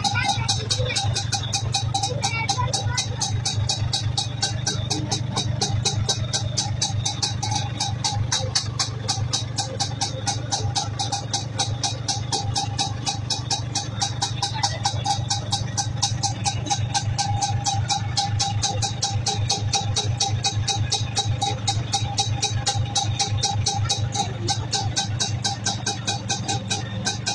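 Vespa auto rickshaw's two-stroke single-cylinder engine idling steadily, with an even, rapid pulse.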